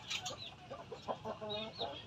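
White gamecock clucking, one short low call about a second and a half in, among short high chirps.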